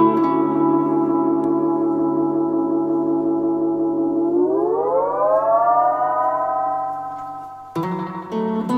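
Roland RE-201 Space Echo tape echo feeding back into a sustained, droning guitar tone. About four seconds in, the whole tone glides smoothly up in pitch over a second or so as the repeat-rate knob speeds up the tape, like a siren. It holds at the higher pitch and fades out near the end, where new guitar notes are plucked.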